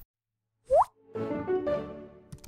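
A short rising 'bloop' sound effect about three-quarters of a second in, followed by a brief musical jingle for an animated logo, starting just after a second in.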